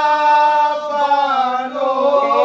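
Soz khwani: a group of men chanting a mournful Shia elegy in unison, unaccompanied. They hold a long note, let it fall away about a second in, and begin the next phrase near the end.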